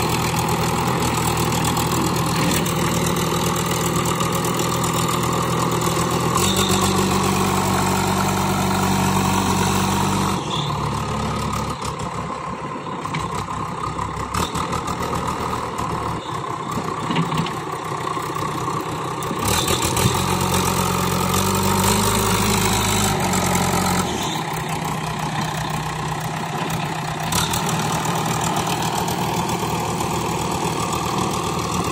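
Diesel engine of a JCB 3DX backhoe loader running steadily while its front loader bucket pushes soil. The engine note shifts abruptly several times as the load and throttle change.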